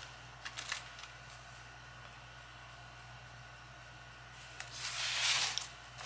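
Faint handling noises as a candle is set into its cup holder among artificial flowers: a few light clicks, then a short rustle about five seconds in.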